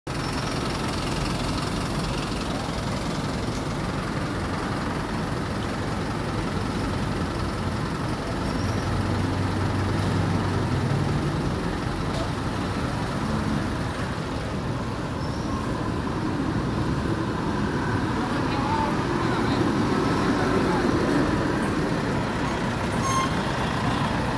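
Steady street traffic noise with vehicle engines running; one engine rises in pitch about ten seconds in, as if speeding up.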